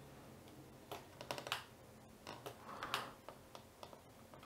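Faint, irregular clicks and taps of computer input at a desk, typing-like, starting about a second in.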